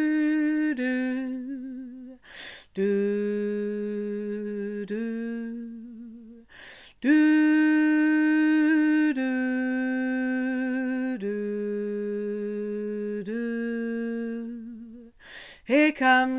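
A woman singing a wordless harmony line unaccompanied: long held notes of one to two seconds each, stepping down and back up in pitch. The same short phrase comes twice, with a breath between.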